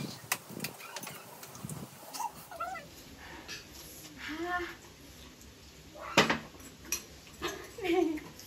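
Eating at a table: metal spoons and forks clicking and scraping on plates and glasses, with the loudest a sharp knock about six seconds in. A short high-pitched call is heard midway and another near the end.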